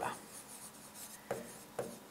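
A pen writing on a digital board's screen: faint scratching strokes with a couple of light taps in the second half.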